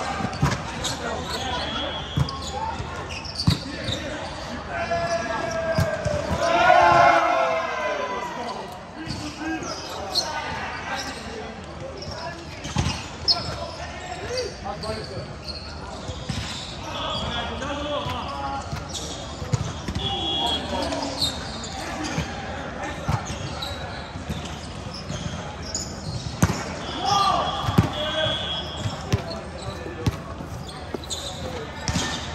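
Indoor volleyball game in a large, echoing hall: repeated thuds of the ball being hit and bouncing on the court, players calling and shouting, loudest about six to eight seconds in, and a few short high squeaks of shoes on the floor.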